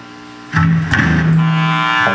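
A live band starts playing about half a second in: a loud, held electric guitar chord with a single sharp drum or cymbal hit just after.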